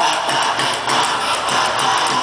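Live rock band playing loudly through the PA, with electric guitar and drums; cymbal strikes come at a steady beat. There is no singing at this point.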